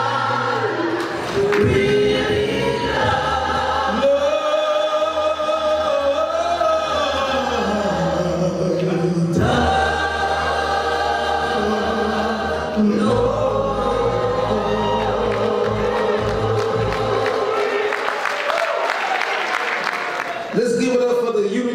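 Large mixed gospel choir of men's and women's voices singing a hymn a cappella, in long held chords that slide between notes.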